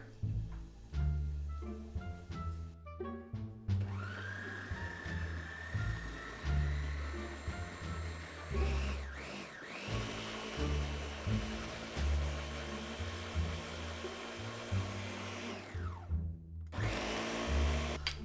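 Ninja countertop blender starting about four seconds in with a rising whine, running steadily as it purees soft cooked butternut squash and cauliflower, then winding down shortly before the end. Background music plays throughout.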